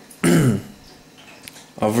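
A man clears his throat once, briefly, with a falling pitch.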